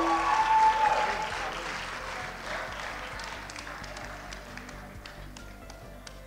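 Audience applause that starts loud and fades away over a few seconds, with soft music underneath.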